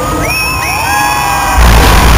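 Concert crowd screaming and cheering, many shrill voices gliding up and down. About one and a half seconds in, a sudden loud burst with deep bass cuts in over the crowd.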